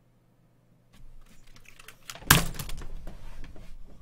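Near silence for about a second, then a run of irregular clicks and knocks with one loud thump a little past halfway, as a person gets up out of a gaming chair at a desk.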